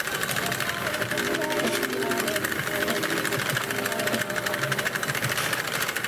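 Sentro knitting machine being cranked round in tube mode, its plastic needles clicking in a fast, even, continuous clatter as the sleeve tube is knitted. Soft background music plays under it.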